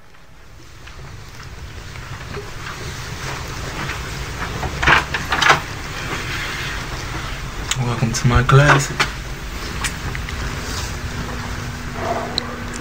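Low, steady rumble of room ambience that slowly grows louder, broken by a few knocks and a brief muffled voice about two-thirds of the way in.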